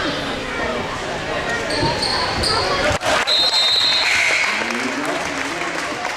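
A basketball bouncing on a hardwood gym floor during a free throw, over crowd chatter in a large gym. A sharp knock comes about halfway through, and several brief high-pitched squeaks and tones come around the middle.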